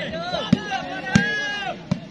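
Volleyball struck by players' hands three times in quick succession during a rally, sharp slaps about two-thirds of a second apart, the middle one loudest. Spectators' voices and shouts carry on underneath.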